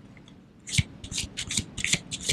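Tarot cards being shuffled by hand: a quick run of short scratchy swishes, about five a second, starting under a second in.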